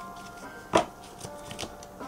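Tarot cards being handled on a table: a few light clicks and taps, one sharper snap about three quarters of a second in, over quiet background music.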